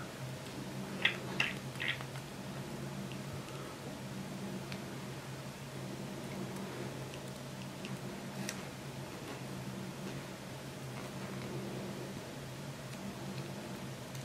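Montblanc Meisterstück 149 piston filler being twisted with its nib in the ink bottle to draw ink up, giving three small clicks or sucks about a second in, then only sparse faint ticks. A steady low hum runs underneath.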